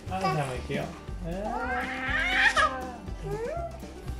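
A toddler's voice calling "kaaka" (mum) several times, with one long drawn-out call in the middle whose pitch rises and then falls.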